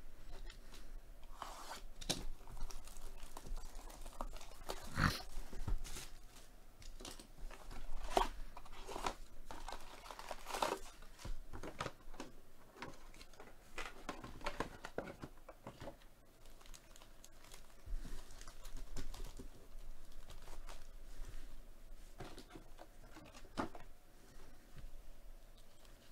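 Wrapping being torn off a cardboard trading-card hobby box and the box opened, then foil card packs crinkling as they are handled and laid out. An irregular run of tearing and crackling, loudest about five, eight and ten seconds in.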